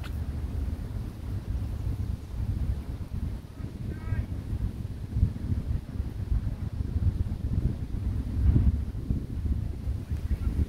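Wind buffeting the microphone in gusts, a deep rumble that swells and drops throughout.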